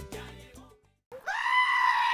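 Salsa music dying away, then after a brief silence a sheep's loud, long bleat held at one pitch, starting a little over a second in.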